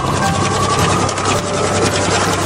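Pages of a book riffling quickly, a fast papery flutter of many small clicks, over soft background music.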